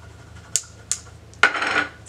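Makeup items being handled on a table: two sharp plastic clicks in the middle, then a louder brief clatter near the end.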